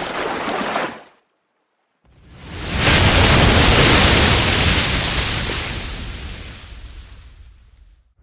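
Water splash and wave sound effect for an animated logo intro: a short rush of water that stops about a second in, then after a pause a big surge like a breaking wave that swells quickly and fades away slowly.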